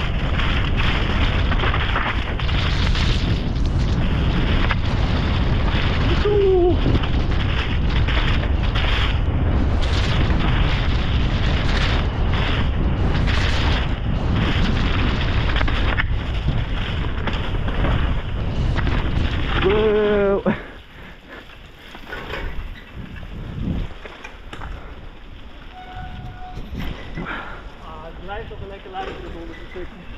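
Mountain bike descending a muddy, rooty forest trail: wind buffeting the helmet-camera microphone and tyres and bike rattling over the rough ground, loud and steady until it drops off sharply about two-thirds of the way through as the bike slows at the bottom.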